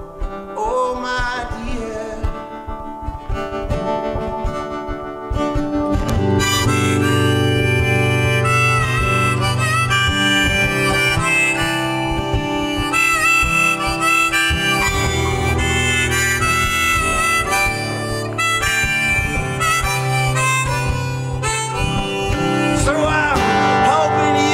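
Instrumental break in a live acoustic song: a steel-string acoustic guitar strummed under a sustained, bending lead melody. The playing grows louder about six seconds in.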